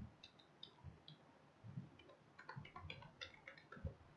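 Faint clicking of computer keyboard keys: a few single key presses in the first second, then a quick run of several more in the last second and a half.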